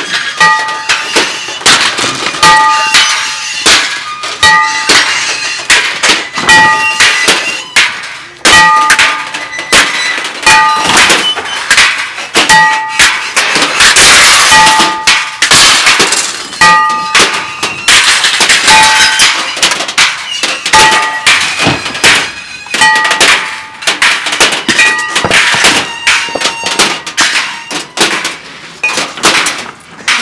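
Improvised percussion on scrap metal: dense, irregular clangs, thunks and crashes as objects are struck, dragged and thrown. A ringing metal piece with a steady tone is hit again and again, with longer bursts of crashing around the middle.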